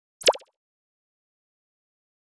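A single short graphic sound effect about a quarter second in: a quick tone sweeping down from very high to low pitch, over in about a quarter second.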